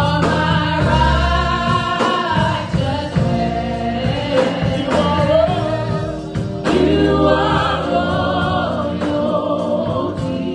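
Gospel praise team of four voices, women and a man, singing together into handheld microphones, amplified through loudspeakers in a hall.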